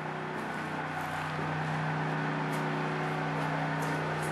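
Steady hum of a running generator, with a few faint taps of footsteps on stairs.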